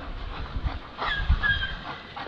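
A dog whining: two short, high, slightly falling whines about a second in.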